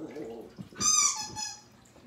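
A small dog's high-pitched yelp-like whine, about a second in, sliding down in pitch over less than a second, from the two terriers playing roughly.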